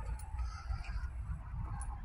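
Low, steady rumble of handling or wind noise on a moving phone microphone, with a few faint clicks and no clear sound event.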